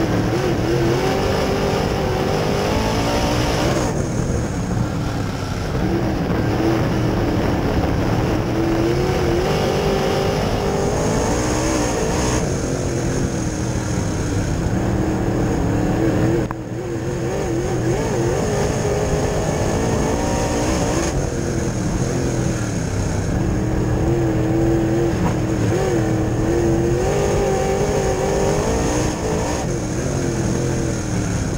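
Open-wheel dirt race car's engine at racing speed, heard loud from inside the cockpit. Its pitch rises and falls as the driver gets back on the throttle and lifts through the corners, with a brief sharp lift a little past halfway.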